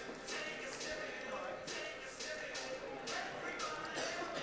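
Faint sound of a large hall: distant voices, with soft tapping and shuffling of wrestlers' feet moving on the mat a few times a second.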